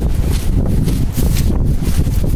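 Strong wind blowing over the microphone: a loud, uneven low rumble that swells and dips with the gusts.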